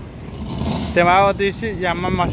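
A person's voice talking from about a second in, over a low steady background rumble.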